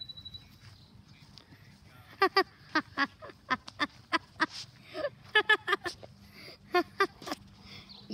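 A person laughing in runs of short giggles, starting about two seconds in and going on until shortly before the end.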